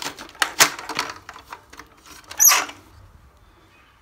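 Plastic clicks and knocks as a toy Dyson DC14 upright vacuum is handled. Several sharp clicks come in the first second and a half, a short rustling hiss follows about two and a half seconds in, then it goes quiet. The toy's motor is not running.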